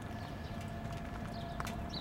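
Light footsteps on pavement over a low steady background rumble and a faint steady hum; the motorcycle's engine is not running.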